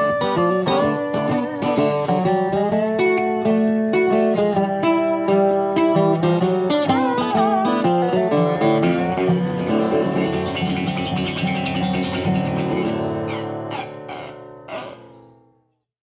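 Two resonator guitars play an instrumental ending: a Scheerhorn squareneck resonator played lap-style with a steel bar, with gliding notes, and a National Pioneer RP1 resonator guitar picked acoustically. The playing thins out and ends on a final chord that rings and fades away about fifteen seconds in.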